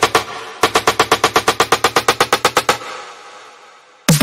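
Electronic snare drum samples triggered from a keyboard: a few quick hits, a brief gap, then a rapid, even snare roll of about ten hits a second lasting some two seconds, ending in a reverb tail that fades away. It is the kind of snare roll used for a build-up in a house track.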